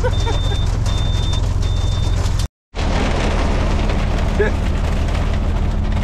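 Heavy rain and hail drumming on the truck cab in a downpour, a dense hiss full of small rapid impacts over a steady low drone. In the first two seconds a high beep sounds three times, and the sound cuts out briefly about halfway through.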